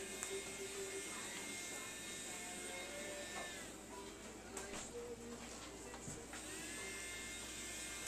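Small battery-powered motor of a toy bubble gun whirring with a steady high buzz; it winds down about three and a half seconds in and spins back up about three seconds later.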